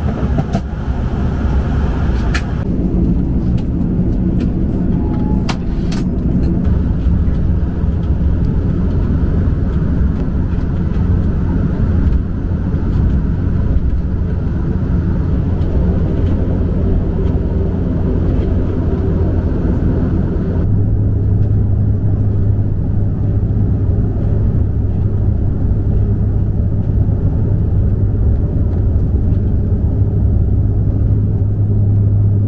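Turboprop airliner's engines and propellers heard from inside the cabin: a steady low drone while the aircraft taxis. About twenty seconds in the drone steps up slightly in pitch and grows stronger as power comes up for the takeoff roll. A couple of light knocks in the first few seconds.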